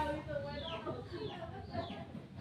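Bird calls: short, high chirps, each falling sharply in pitch, about four of them roughly half a second apart, over a murmur of voices.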